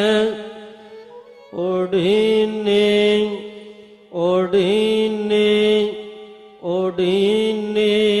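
A man's voice chanting Sikh Gurbani verses in a melodic, sung style. There are three held phrases, the first beginning about one and a half seconds in, each followed by a short pause.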